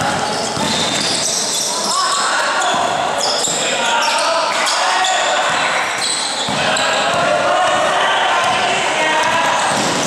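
Youth basketball game in a large gym: the ball dribbled on the hardwood-style court floor, sneakers squeaking, and players and spectators shouting and talking, all echoing in the hall.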